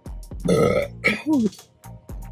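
A woman burps loudly about half a second in, the belch ending in a short falling tone.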